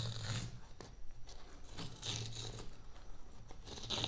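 Paper tear strip being ripped along the seal of a Nothing Ear (1) earbuds box, in three short ripping pulls about two seconds apart.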